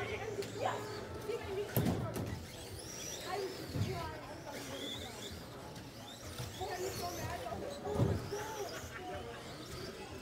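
Electric RC short-course trucks running on an indoor track: faint high whines that rise and fall, with three dull thuds about two seconds in, near four seconds and at eight seconds as the trucks land or strike the track.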